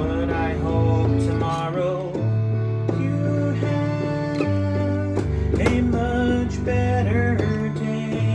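Electronic keyboard playing a tune: held bass notes that change every second or so, under chords and a melody line.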